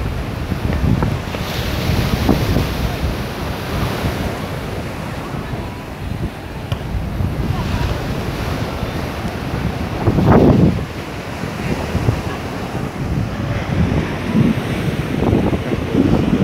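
Wind buffeting the microphone over the steady wash of surf on a sandy beach, with a louder rumble of wind about ten seconds in.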